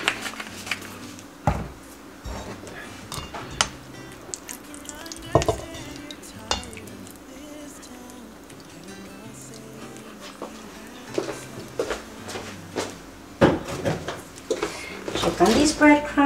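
Scattered clinks and knocks of a glass measuring cup and a spatula against a stainless steel mixing bowl as oil is poured in for a pumpkin batter.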